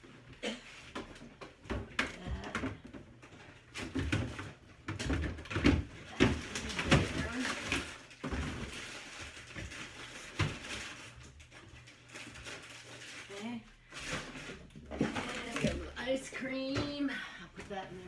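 Irregular knocks, clunks and rustles of frozen food packages and plastic freezer bins being handled and moved around in a side-by-side freezer.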